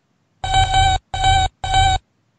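A cartoon robot's electronic beeping voice: three steady buzzy beeps at one pitch, starting about half a second in, the first a little longer than the next two.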